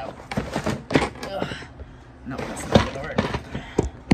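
Several sharp knocks and bumps of a handheld phone being moved around and set down on a kitchen counter, with low talking between them.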